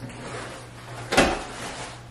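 A single sharp knock about a second in, with a short ringing tail, over faint background hiss and hum.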